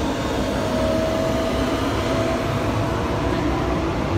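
Steady low mechanical rumble with a faint steady hum above it, the background noise of running machinery or a vehicle.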